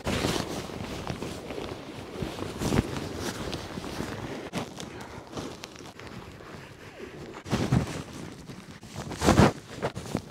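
Hilleberg Soulo tent fabric rustling and crinkling as it is handled, spread out and pitched, with a few louder bursts of handling near the end.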